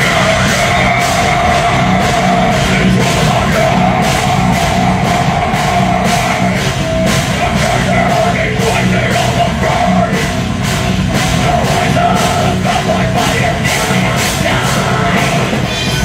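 Live rock band playing loud, heavy rock with distorted guitars over a steady driving drum beat.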